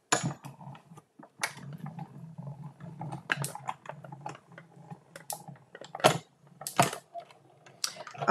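Plastic cutting plates being handled and set into a Stampin' Cut & Emboss manual die-cutting machine: a series of clicks and knocks, with a faint low hum through the middle.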